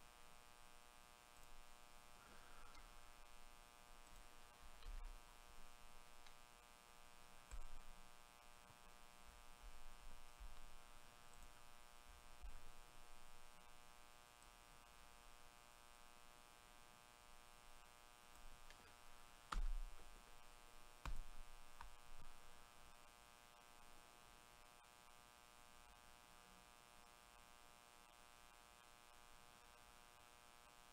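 Near silence: a faint, steady electrical mains hum, with a few soft low knocks and a pair of faint clicks about two-thirds of the way through.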